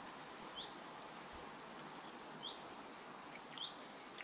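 A bird's short rising chirps, three in the space of a few seconds, faint over a steady outdoor hiss.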